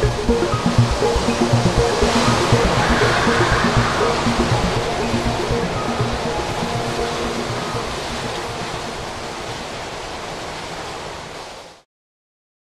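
Storm wind and heavy rain making a steady rushing noise. Music fades out under it in the first couple of seconds. The rushing is loudest a few seconds in, then slowly fades and stops just before the end.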